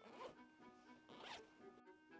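Faint backpack zipper being pulled open in two short strokes, about a quarter second in and again just past one second.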